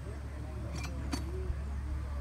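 Lawn mower engine droning steadily in the background under nearby talk, with two short sharp clicks about a second in.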